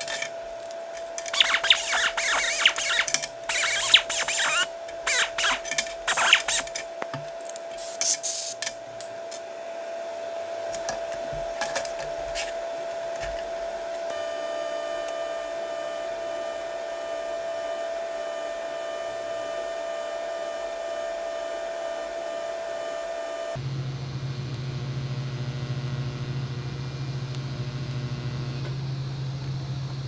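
Metal clanking and knocking as steel square tubing and tools are handled on a steel welding table for the first several seconds. From about halfway, a TIG welding arc runs steadily with a thin buzz, then stops suddenly and gives way to a low steady hum.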